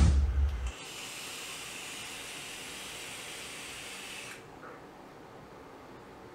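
Loud heavy-metal intro music cuts off within the first second. Then comes a steady, airy hiss of vaping, drawing on a mod and blowing out big vapour clouds, lasting about three and a half seconds before it stops abruptly.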